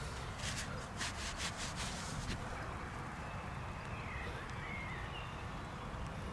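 Outdoor field ambience: a steady low rumble of wind on the microphone, with a few soft rustling scrapes in the first couple of seconds as a gloved hand handles a dug coin, and a few faint high bird calls in the middle.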